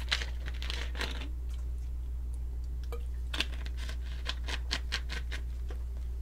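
Scattered short clicks and taps, a few close together in the second half, over a steady low electrical hum.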